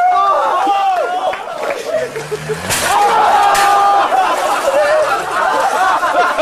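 Several people talking and calling out over one another, with a short noisy burst just under three seconds in.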